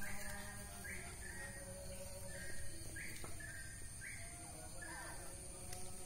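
Short, high-pitched animal calls repeating about once a second, over a steady high-pitched whine.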